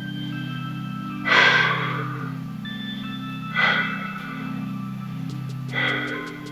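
Background music of sustained low chords with a light melody above. Over it, a person's loud breaths come three times, about every two seconds, during a held stretch.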